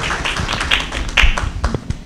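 A small audience applauding, dense at first and then thinning out to a few scattered claps near the end.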